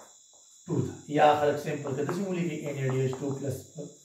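A man speaking in a lecture. Talk starts about two-thirds of a second in and runs almost to the end, over a faint, steady high-pitched whine that continues through the pauses.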